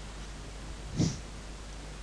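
A single short breath noise from a person close to the microphone, about a second in, over a faint steady low hum.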